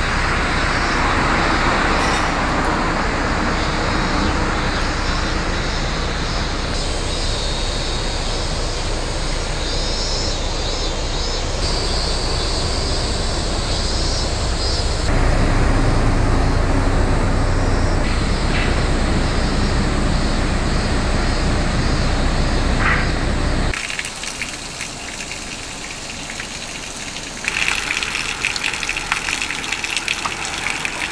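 Outdoor ambience that changes in abrupt steps: a steady hiss, then a louder stretch of low road-traffic rumble, and near the end water splashing from a pipe spout onto the ground.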